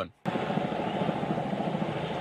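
Steady engine noise with a fast flutter, starting suddenly and cutting off about two seconds later.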